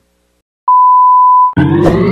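A single steady electronic beep lasting just under a second, starting after a short silence. About halfway through, a loud synthesized sweep of several tones comes in, rising steadily in pitch, as a countdown-leader intro effect.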